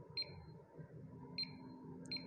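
Megger MIT510/2 insulation resistance tester beeping as its voltage-select button is pressed: two short high beeps about a second apart.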